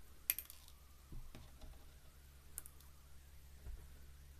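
Light clicks and taps of handling glass seed beads and small plastic bead dishes: a quick cluster just after the start, a couple more about a second in, one midway and one near the end, over a faint steady low hum.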